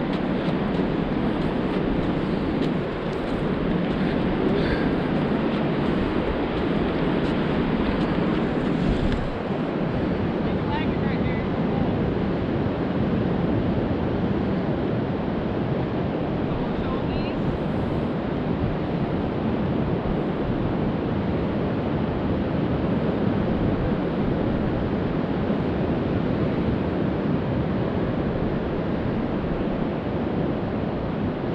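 Steady wind rushing over the microphone on an open beach, a constant even roar with no breaks.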